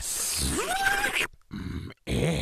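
A hissing noise with a short voice-like squeal rising in pitch about half a second in, then holding briefly: a cartoon character's vocal sound effect.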